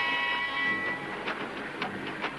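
Steam train whistle held for about the first second, then a few sharp clanks of rolling railway wagons.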